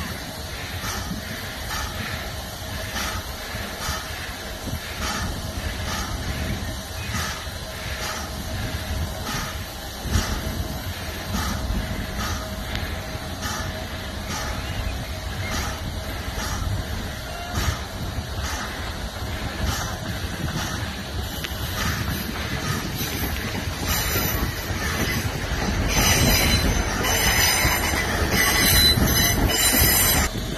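LMS Black Five 4-6-0 steam locomotive at the head of its train, giving a steady hiss and tone over a low rumble, with a regular beat a little over once a second. The noise grows louder and rougher in the last few seconds.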